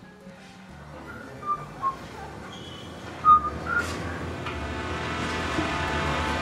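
Film underscore with a few short, clear whistled notes in the first half, the loudest about three seconds in. Sustained music swells up under them near the end.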